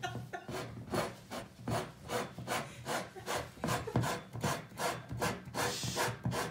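A corkscrew being twisted by hand into the cork of a wine bottle, squeaking in an even rhythm of about three short squeaks a second.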